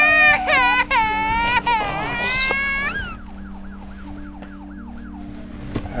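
A baby crying in loud, high, wavering wails for about three seconds, then falling quieter. Through the quieter part a faint tone repeats, falling in pitch about two or three times a second, over a steady low hum.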